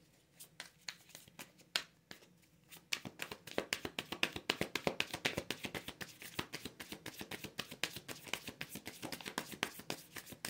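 A deck of Light Seers Tarot cards being shuffled by hand: a few scattered card clicks at first, then a quick, dense run of flicking cards from about three seconds in.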